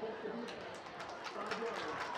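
Faint outdoor stadium ambience with distant, indistinct voices, between bursts of close commentary.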